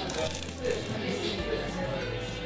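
Crisp, thin waffle crunching as it is bitten, a short crackle right at the start, then chewing, over background music.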